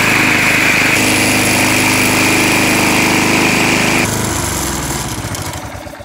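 Briggs & Stratton 675 series 190cc single-cylinder engine running at high throttle, at about 3,000–3,200 RPM, its top speed being raised by bending out the governor spring bracket for more spring tension. Its note shifts about a second in, and after about four seconds the sound drops and dies away.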